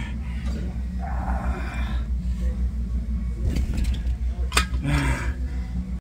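Steady low rumble of room noise, with rustling and a sharp knock about four and a half seconds in as the phone is handled and moved.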